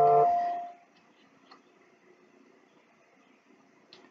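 A phone's notification chime, a steady ringing tone that fades out within the first second. After it, near quiet with a couple of faint ticks.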